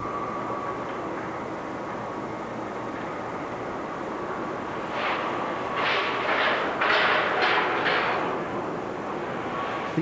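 Electric trolley coach pulling away along a city street: a steady traffic rumble with a faint thin hum. About five seconds in comes a run of about six short hissing bursts.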